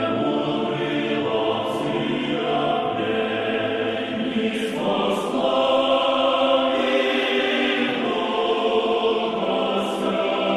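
Church choir singing a slow chant in sustained chords, with words faintly heard in the consonants. The singing grows fuller and louder about five seconds in.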